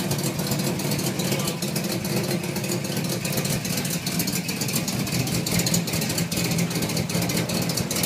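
LS V8 engine in a Chevrolet Caprice box-body idling steadily: a low, even hum with a fast ticking over it. The car has an exhaust leak, which the owner says makes it run a little loud.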